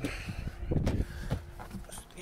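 Footsteps and a run of irregular knocks and thuds as a person opens an SUV door and climbs into the driver's seat.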